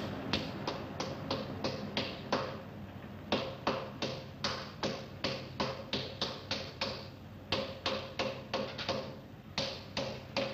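A hand tool striking metal on a car engine under the open hood, in rapid rhythmic blows of about three a second, broken by two short pauses. It is rough, heavy-handed work on the engine.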